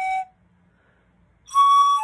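Eight-tubed 3D-printed pan flute, made of Formlabs Draft resin, being played: a held note ends just after the start, then there is a pause of over a second for breath, then a higher note comes in and steps down to a lower one at the end.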